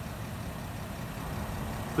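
Low steady rumble of a 2018 Porsche Cayenne's 3.6-litre V6 idling.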